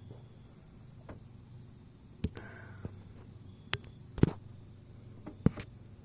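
A handful of sharp clicks and knocks, about five scattered over a few seconds, the loudest about four seconds in, over a faint steady low hum.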